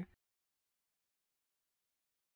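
Near silence: the soundtrack is dead quiet, with no sound from the stirring or the pot.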